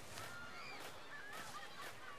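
Birds chirping faintly in the background, many short rising and falling calls overlapping, with soft clicks scattered among them.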